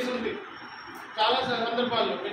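Only speech: a man talking, with a short pause about half a second in before he goes on.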